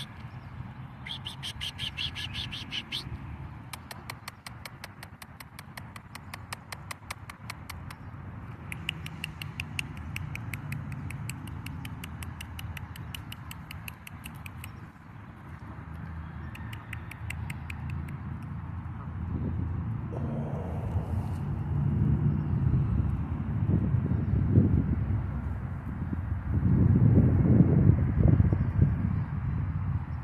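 Short stretches of rapid, high-pitched bird chatter in the first half. After that a low rumbling noise builds and is loudest near the end.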